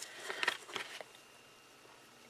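Shredded paper worm bedding rustling and crackling as a gloved hand digs into it, briefly in the first second.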